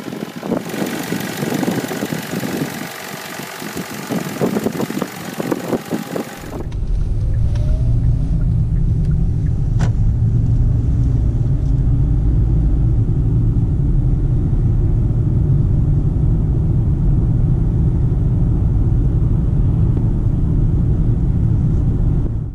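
2018 Kia Optima LX's 2.4-litre direct-injected four-cylinder engine idling with the hood open, a busy ticking over its running. About six seconds in it changes abruptly to a steady low rumble of engine and road noise heard from inside the car while driving.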